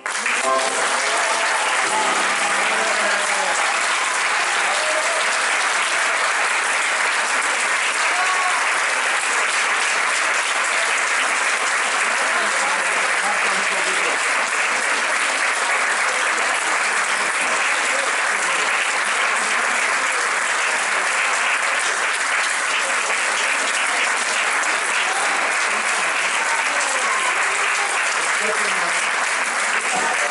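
Audience applauding steadily, breaking out right as the singing stops, with some voices among the clapping.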